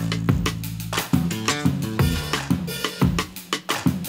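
Electric bass guitar playing a bass line over a programmed drum beat from an MPC, with kick and snare hits in a steady groove.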